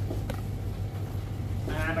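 A steady low hum, with a faint click shortly after it starts. Near the end a man gives a short, hesitant 'ah'.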